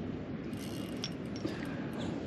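Fishing reel being wound in with a steady gear noise, a few faint ticks, as a hooked tailor is played toward the boat on light tackle.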